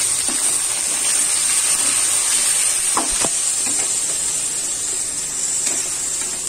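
Marinated chicken pieces sizzling in hot oil in an aluminium kadai just after going in: a steady frying hiss, with a couple of sharp clicks about three seconds in.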